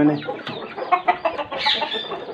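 Chickens clucking in a coop: a string of short, scattered clucks, with one sharper, higher call near the end.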